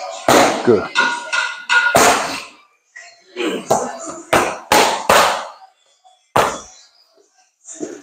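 Boxing gloves smacking focus mitts in quick combinations: about six sharp hits in the first two seconds, a short pause, then about five more and a single last hit.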